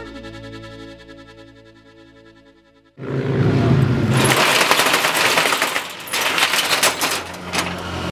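A norteño band's last sustained chord fading out, then about three seconds in an abrupt, loud, rapid rattling of a steel roll-up shop shutter that runs on in uneven bursts.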